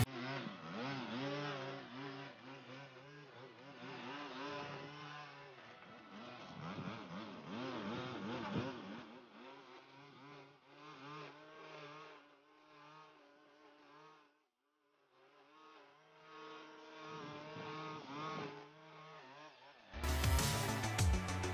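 Gas string trimmer engine running and revving up and down as it cuts thick grass, its pitch rising and falling with the throttle. The sound drops away almost completely for a moment about two-thirds of the way in, then picks up again.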